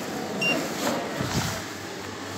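A Kone lift's car call button pressed, answered by one short, high electronic beep about half a second in. A low steady hum sets in after about a second and a half.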